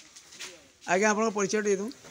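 A man's voice speaking into a close microphone, starting about a second in with a drawn-out, fairly level-pitched phrase.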